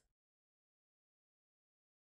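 Complete digital silence, without even room tone.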